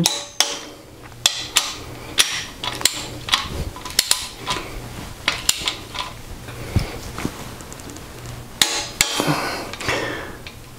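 Torque wrench ratcheting in sharp, irregular metallic clicks as bearing cap bolts are tightened to 40–45 ft-lb, with a longer, louder burst near the end.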